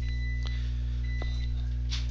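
A steady low electrical hum, with a faint high whine that stops about half a second in and a couple of faint clicks.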